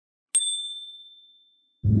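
A single notification-bell 'ding' sound effect about a third of a second in: one clear, high, bell-like tone that rings and fades away over about a second and a half.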